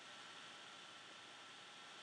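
Near silence: a pause in speech, with only faint steady hiss and a faint thin steady tone.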